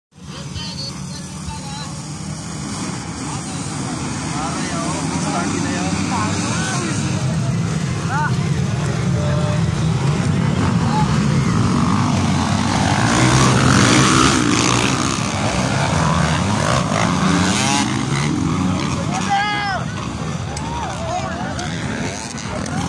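A pack of 150-class motocross dirt bikes racing past, many engines revving up and down over each other, growing louder and peaking about two-thirds of the way through as the pack goes by. Crowd voices shouting mix in over the engines.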